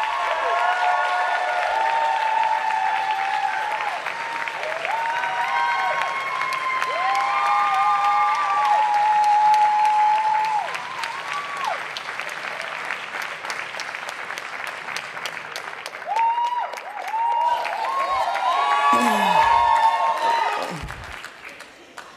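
Audience applauding, with voices calling out and whooping over the clapping. The applause eases off about halfway, swells again, then fades away near the end.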